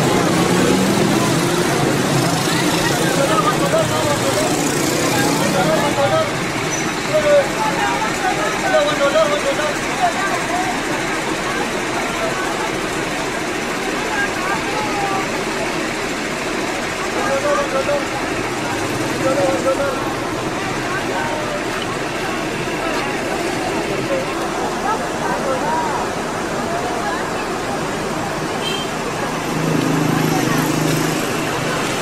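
Outdoor ambience of steady vehicle traffic, with indistinct voices talking throughout.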